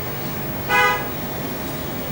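A single short vehicle horn toot, steady in pitch, about three-quarters of a second in, over a steady low background hum.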